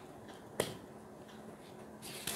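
Tarot cards being handled on a table: one sharp click a little over half a second in as a card is set down or snapped against the deck, with a few faint card rustles.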